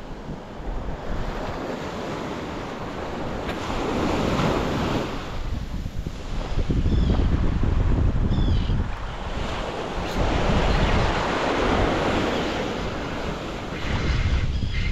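Small surf waves breaking and washing up the sand in slow surges that rise and fall every few seconds, with wind buffeting the microphone.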